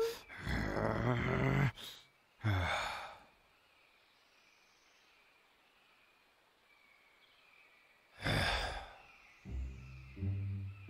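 A cartoon character's breathy exhales and sighs: two in the first three seconds, a long quiet stretch, then one more sigh near the end.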